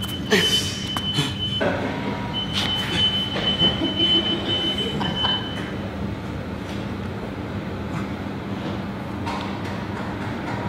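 Steady mechanical hum with a thin, high, steady whine that stops about a second and a half in, comes back, and stops again about six seconds in, with a few light knocks over it.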